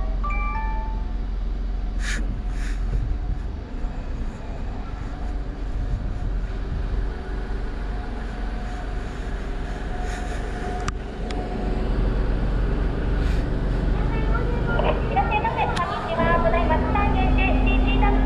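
Car engine idling at low speed, heard from inside the cabin as a steady low hum while the car creeps up to the drive-through order board. Near the end a voice starts up.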